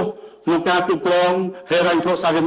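A man reading a prepared text aloud into a podium microphone in slow, drawn-out delivery. After a brief pause he holds one long syllable at a nearly level pitch, then goes on speaking near the end.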